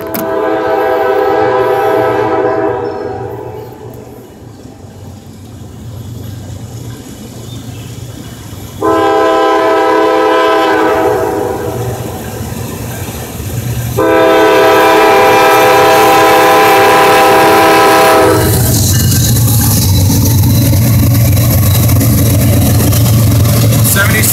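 Norfolk Southern diesel locomotive's air horn sounding a chord in three long blasts as the train approaches a grade crossing. From about 18 s on it is followed by the loud, steady low rumble of the lead locomotives' diesel engines passing close by.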